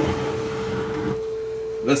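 A 440 Hz test tone played back from cassette on a Yamaha KX670 deck: one steady, unbroken note that runs a little sharp, at about 442 Hz. The replacement motor turns the tape slightly fast and has not yet been adjusted.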